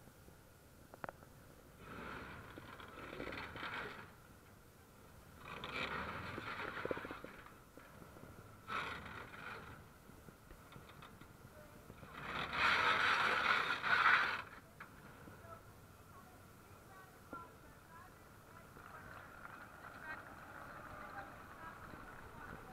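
T-34/85 tank's V12 diesel engine revving in four surges as the tank manoeuvres on sandy gravel, with its steel tracks scraping. The loudest surge comes about twelve seconds in.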